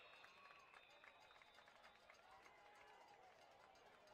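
Faint crowd sound from a football stadium: distant voices calling out over a low murmur, with scattered faint clicks.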